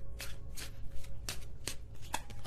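Hands shuffling a deck of oracle cards: a quick run of short card slaps and riffles, about three or four a second.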